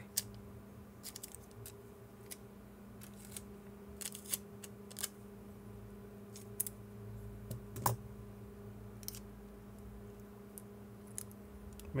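Scissors snipping small pieces off a strip of clear adhesive tape: scattered faint snips, clicks and tape crackles, the sharpest about eight seconds in, over a steady low hum.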